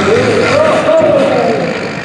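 A man's drawn-out calling voice over the steady idle of an International 1066 pulling tractor's engine.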